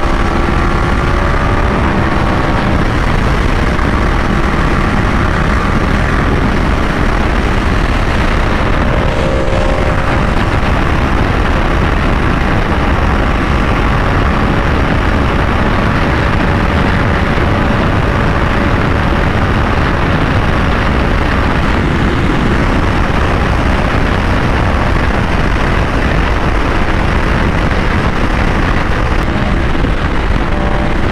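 Steady wind rush at highway speed over a 2023 Yamaha R1 sport bike, with the engine running underneath at cruising revs.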